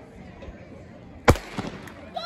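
Starting pistol fired once to start a race: a single sharp crack about a second and a quarter in, with a fainter second crack just after.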